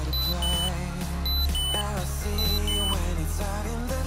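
Background pop music with a melody line, over which a workout timer gives three short countdown beeps about a second apart, each a high note dropping to a lower one, counting down the last seconds of the rest before the next exercise.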